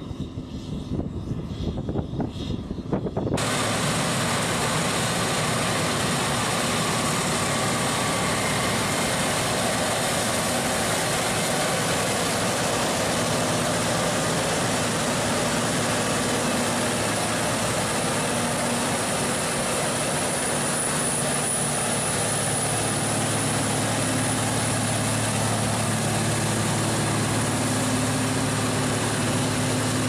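Wind buffeting the microphone for about three seconds, then an abrupt switch to the steady, loud drone of a John Deere tractor's diesel engine running; a low steady hum comes through more strongly in the second half.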